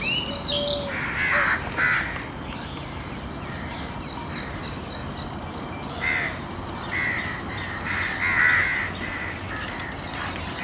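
Harsh bird calls over a steady background hiss: two short calls about a second in, then a run of several more from about six to nine seconds in.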